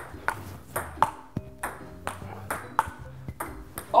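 Table tennis rally: the ball clicking back and forth off the paddles and the table, about ten quick, evenly spaced strikes.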